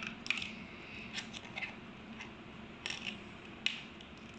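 Small plastic clicks and taps of LEGO minifigures being handled and set down on a hard floor: about half a dozen short, light clicks spread out over a few seconds.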